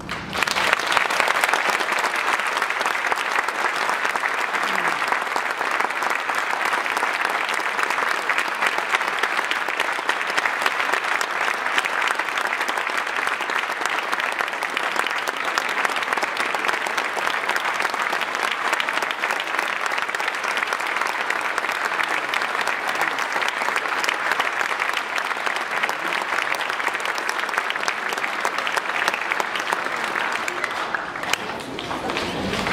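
Audience applauding: dense, even clapping that starts just as the orchestra's final chord stops and holds steady, easing slightly near the end.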